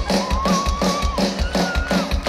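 Pop-rock band music with a steady, quick kick-drum beat and a singer holding two long notes, the second higher than the first.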